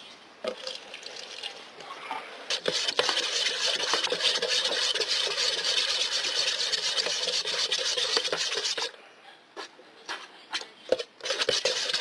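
A wooden stick stirring thick seam sealer thinned with synthetic solvent in a metal can, scraping steadily around the can's walls. The scraping starts a couple of seconds in and stops for a moment near nine seconds, then a few more strokes follow near the end.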